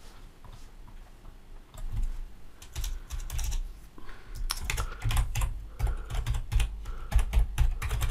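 Computer keyboard typing: a run of quick, uneven key clicks that starts about two seconds in and continues.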